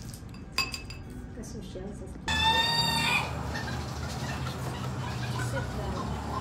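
A breadstick knocks against a stemmed wine glass with one short ringing clink, then a chicken calls once, loudly, for under a second over outdoor background noise.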